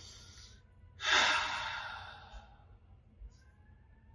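A man taking a slow, deep breath: a faint inhale at the start, then about a second in a long audible exhale that fades away over about a second and a half.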